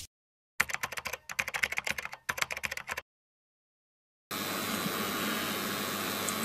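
Rapid, irregular clicking for about two and a half seconds, a typing-like sound effect from a TV channel's logo intro. After a second of silence, steady room noise with a faint high whine comes in.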